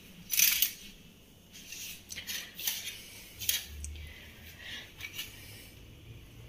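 Stainless-steel utensils and dishes clinking and scraping as they are handled: a string of short clatters, the loudest about half a second in.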